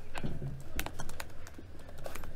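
Typing on laptop keyboards: irregular, unevenly spaced key clicks, over a steady low room hum.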